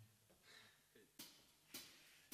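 Near silence, then two sharp clicks about half a second apart near the end: the drummer's count-in ahead of the band starting the song.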